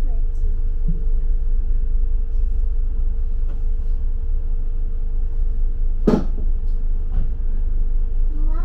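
Inside a moving double-decker bus: a steady low rumble with a constant hum over it, and one sharp knock about six seconds in.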